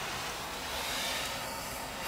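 Steady, even hiss of background noise with no distinct event: room tone with the recording's own noise floor.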